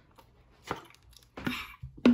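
A few short, quiet knocks and clicks, about half a second apart, as a plastic drink bottle is gulped from and set down on a table.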